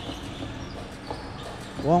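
Crowd noise in a basketball arena, with a basketball bouncing on the court now and then. A commentator's voice comes in near the end.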